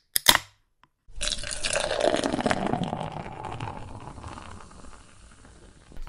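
A sharp click just after the start, then from about a second in, beer pouring into a glass, the splash and fizz slowly dying away.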